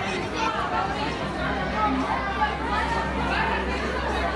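Several people talking over one another in a busy room, over a steady low hum.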